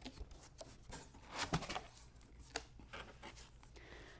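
Cardboard box flaps being opened and folded back by hand: faint rustles and scrapes of cardboard with a few light knocks.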